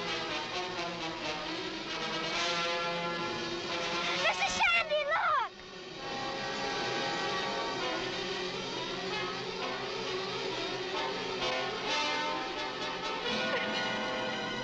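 Dramatic orchestral film score with brass. About four seconds in, a loud sliding yell lasts about a second and cuts off abruptly, and then the music carries on.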